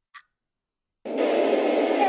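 One clock tick over silence, then about a second in a loud, steady rushing noise cuts in suddenly: heavy wind noise on the film's sound track.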